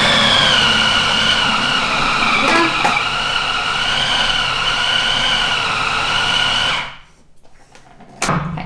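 Philips food processor running, blending a thick paste of hazelnut butter, dates and cacao powder: a steady motor whine with a slightly wavering pitch that cuts off suddenly about seven seconds in.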